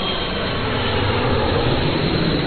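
Steady, loud mechanical drone, like a running engine, with no rhythm or change in pitch, and a faint high whistle fading out in the first half-second.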